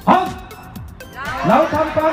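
A large group of people shouting a slogan in unison: one short loud shout at the start, then a longer shouted phrase beginning after about a second.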